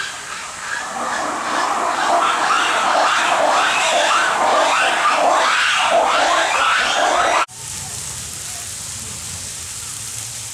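A loud babble of many overlapping high voices, like a crowd of children chattering and calling all at once, swelling over the first seconds. It cuts off suddenly about seven and a half seconds in, giving way to a quieter steady outdoor background with a low rumble.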